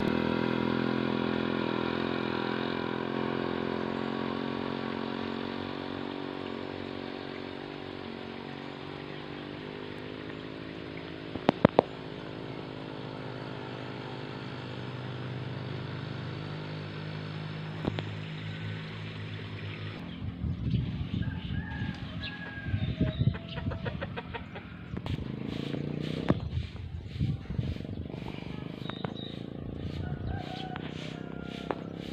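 A motorcycle engine runs steadily, loudest at first and slowly fading as it moves away. About two-thirds of the way in the sound changes to chickens clucking.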